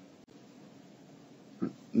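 Faint steady hiss of a quiet recording, with a man briefly saying "right" near the end.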